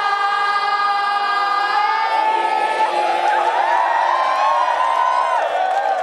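Several young women's voices hold a long sung note together through microphones. About three seconds in it breaks into group cheering and squeals.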